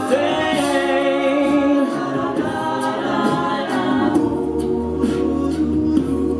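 Mixed-voice a cappella group singing sustained chord harmonies, with a deep sung bass line that comes in strongly about four seconds in.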